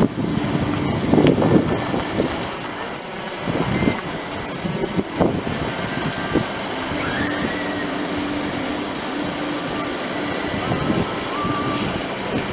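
Hyundai i20 car moving slowly, its engine and tyres running steadily, heard from the car with wind noise on the microphone.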